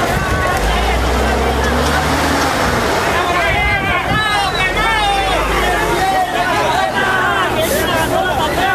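A crowd of people shouting and talking over one another, with several raised voices about halfway through. A steady low rumble sits underneath and fades out about six seconds in.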